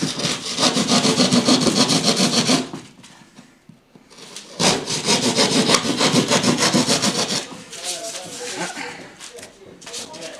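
Hand plasterboard saw cutting through plasterboard in two runs of quick back-and-forth strokes, with a pause of about two seconds between them. The sawing goes fainter for the last couple of seconds.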